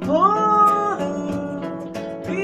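A singing voice swoops up into one held note lasting about a second, then drops away, over nylon-string classical guitar accompaniment in fado style.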